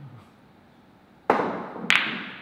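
A pool shot: a sharp clack of a cue and billiard balls about a second in, then a second, louder clack of ball striking ball a little over half a second later, each with a short ringing tail.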